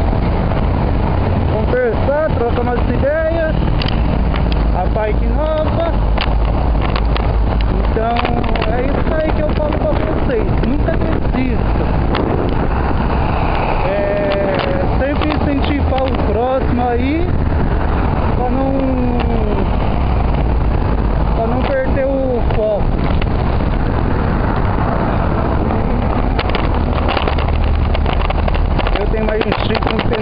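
Wind rumbling on a bicycle-mounted camera's microphone while riding, with rattles and clicks from the bike rolling over rough pavement.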